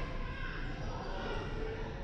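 Basketball bouncing on a hardwood gym floor during play, with spectators talking over it.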